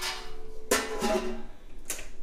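Stainless steel stockpot lid clanking against the pot about two-thirds of a second in and ringing with a bell-like tone that fades, then a sharp tap near the end.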